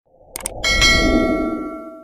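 Subscribe-button sound effect: a quick double mouse click, then a bright bell ding that rings on and fades out, over a low whoosh.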